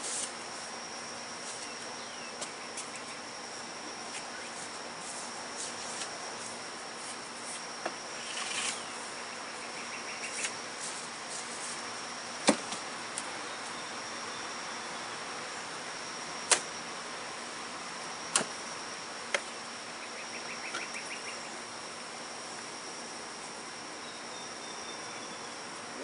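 Steady buzzing of honey bees around the hives with a constant high whine, broken by a few sharp wooden clicks and knocks, the loudest about halfway through, as the hive's cover is pried off with a hive tool.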